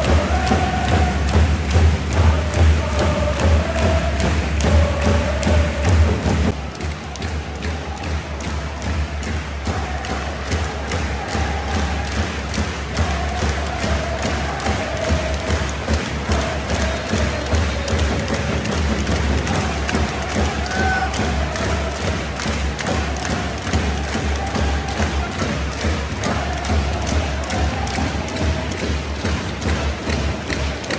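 Football supporters' chant: a large crowd singing a melody in unison over a steady bass drum beat. The sound drops in level about six and a half seconds in, and the chanting and drumming carry on more quietly.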